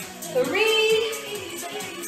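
Workout music with a steady beat and a singing voice; about half a second in, a sung note slides up and is held for most of a second.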